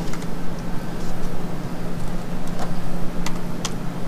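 A few computer keyboard keystrokes, mostly in the second half, over a steady mechanical hum and hiss.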